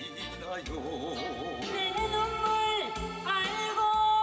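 Trot song sung live into a microphone with musical accompaniment, the voice holding long notes with a wide, even vibrato.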